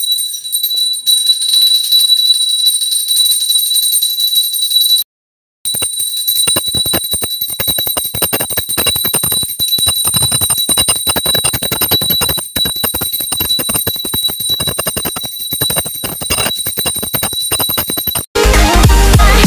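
Small puja hand bell (ghanti) rung continuously during worship: a high, steady ring over a fast rattle of clapper strikes. The sound cuts out for about half a second about five seconds in, then the ringing comes back faster.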